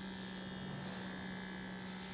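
Electric suction lip plumper's small pump motor humming steadily, with a faint high whine above the hum, while held against the lips pulling suction on them.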